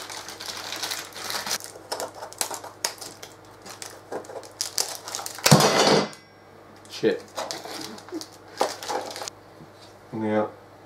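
Clear plastic bag crinkling and rustling as a sheet-metal case panel is pulled out of it, with irregular light clicks and knocks. The loudest rustle comes about halfway through.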